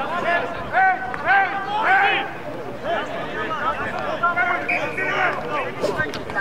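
Several men shouting short, high calls during open play in a rugby league game, the voices rising and falling in quick arcs.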